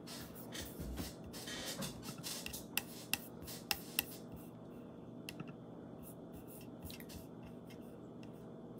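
Handling noise close to the microphone: rustling for the first couple of seconds, then a few sharp clicks and taps, the loudest four coming in quick succession near the middle, over a steady low electrical hum.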